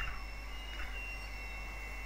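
Steady low electrical hum and hiss with a faint high whine, broken by a single short click at the start.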